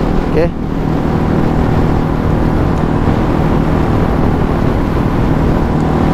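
Yamaha LC135 moped's single-cylinder four-stroke engine running at a steady cruise of about 70 km/h, its tone holding steady, under wind and road noise from riding.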